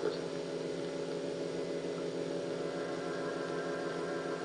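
A steady electrical hum made of several even, unchanging tones, with no knocks or other events.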